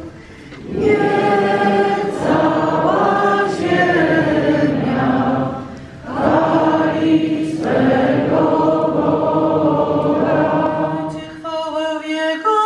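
Church congregation singing a hymn together in long held phrases, with short breaks near the start and about six seconds in.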